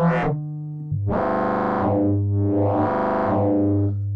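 Buchla Music Easel synthesizer notes played on its capacitive touch keyboard, over a steady low tone. Finger pressure on the keys drives both the timbre and the FM depth, so each of the notes grows brighter and then mellows again: a short note, then two longer swelling notes.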